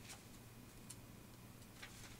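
Near silence: a few faint clicks and light taps as paper cards are handled and laid down on a desk, over a low steady hum.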